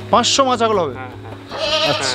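Beetal goats bleating: two calls, one about a second long at the start and a shorter one near the end, each falling in pitch.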